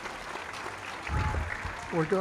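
Audience applauding, with a low bump about a second in.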